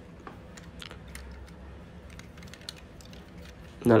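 Faint, irregular small clicks and taps of fingers handling a hard plastic Transformers toy car.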